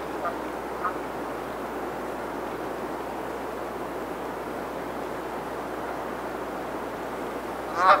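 Bird calls over steady background noise: two short pitched calls near the start, then a single louder call just before the end.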